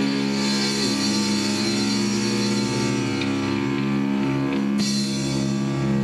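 Rock band jamming: electric guitars holding sustained chords over a drum kit, with the low notes shifting about one second in and again a little after three seconds.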